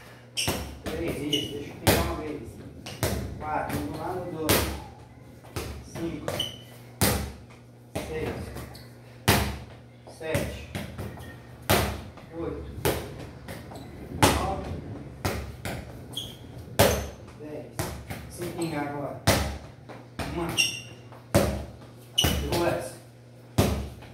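A football being headed and struck back and forth: sharp thuds about once a second, with voices between the hits.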